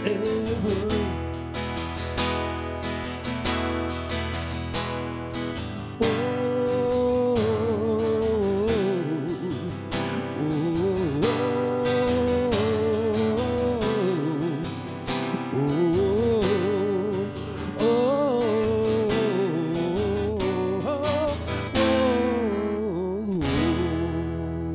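Strummed Fender acoustic guitar with a man singing a melody over it; the voice comes in strongly about six seconds in.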